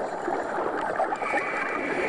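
Underwater bubbling of a scuba diver's exhaled air streaming out of the regulator. A faint steady high tone joins about a second in.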